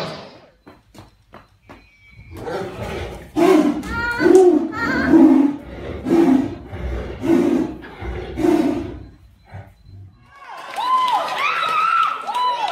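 Two tigers fighting, snarling and roaring in a string of about six loud bursts, roughly one a second. Near the end, high excited voices with rising and falling pitch take over.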